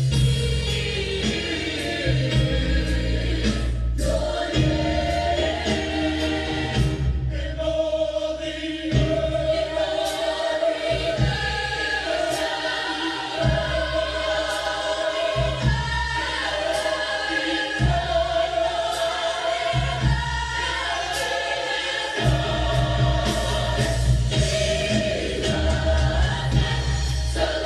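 Gospel choir music: a choir singing long, wavering held notes over instrumental backing with a deep bass.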